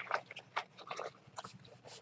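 Faint scattered clicks and rustles of a knitting project being handled on its needles.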